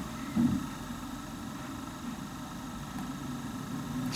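Steady low background hum with a few faint steady tones above it, and one brief faint sound about half a second in.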